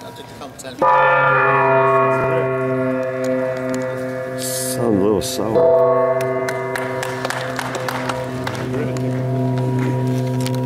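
Large flat gong hung in a frame, struck once about a second in and left ringing with a long, many-toned sustained ring that swells again about halfway through.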